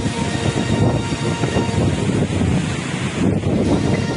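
Cyclone-force wind rushing loudly against the microphone, a rough noise with no clear beat.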